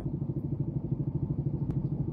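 Motorcycle engine idling just outside the car, a steady low throb of about ten beats a second, heard from inside the car.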